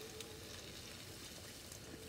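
Faint, steady sizzle from a hot cast iron skillet of sautéed onions and turkey sausage with water just added, under a faint steady hum.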